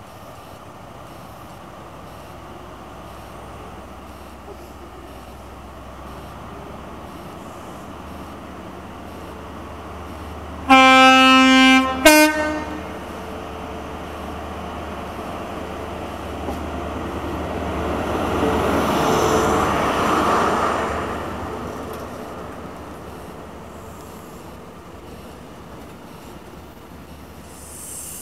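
CrossCountry HST's Class 43 diesel power car sounding its two-tone horn about eleven seconds in: a lower note held for over a second, then a short higher note. The power car then grows louder as it pulls past under power, peaking some eight seconds after the horn, and the sound fades as the coaches roll by.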